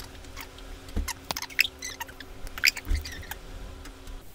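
Computer keyboard and mouse clicks: scattered, irregular short clicks over a steady low electrical hum.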